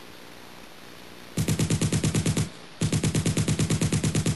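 Heavy .50-calibre machine gun firing in two long rapid bursts, about ten shots a second, with a short pause between. The first burst starts about a second and a half in; the second starts just before the three-second mark.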